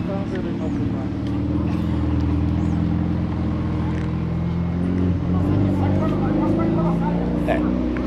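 A motor vehicle's engine running close by at a steady idle, an even low hum whose pitch shifts slightly partway through.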